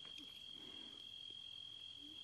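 Faint, steady high-pitched trill of crickets singing.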